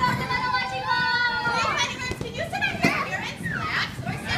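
A group of young children shouting and squealing as they play, with one long high-pitched squeal in the first second and a half, followed by shorter, overlapping cries and chatter.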